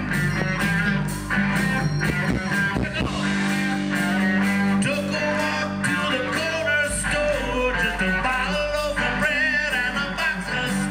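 Live rock band playing an instrumental passage, electric guitar over bass and drums with a steady beat.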